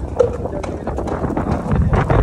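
Gusty wind rumbling on the phone's microphone, with irregular footsteps of a person walking on a dirt lane.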